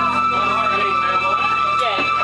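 Electric keyboard holding the song's last note as a single steady tone while the rest of the chord fades, with audience voices chattering over it.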